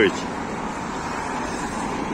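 Steady road traffic on a city street: an even hiss of cars passing close by.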